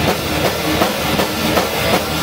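Rock band playing live and loud, the drum kit's bass drum and cymbals keeping a fast steady beat under the other instruments.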